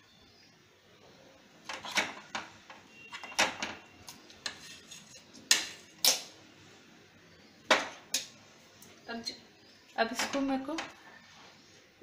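A metal spoon clinking and scraping against the rim of a non-stick pan as lumps of mawa are knocked off it. It makes a string of sharp clinks, and the loudest two come about five and a half and six seconds in.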